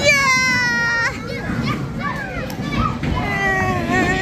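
A young child's high-pitched, drawn-out squeal lasting about a second, then a shorter call falling in pitch near the end, over a steady low background rumble.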